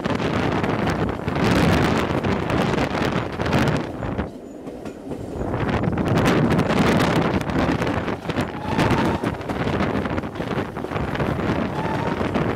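Train coach running along the track, heard from an open carriage window: wind buffets the microphone over the rumble and clatter of the wheels on the rails. The wind noise drops away briefly about four seconds in.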